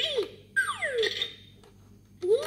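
Electronic sound effects from a Fisher-Price Laugh & Learn Count & Learn Piggy Bank's speaker as a coin goes into the slot. A quick boing-like tone rises and falls, and about half a second in a long whistle-like glide falls in pitch.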